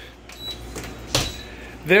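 Door of a Danby countertop dishwasher being pulled open, with one sharp clunk of the latch and door about a second in, over a low rumble.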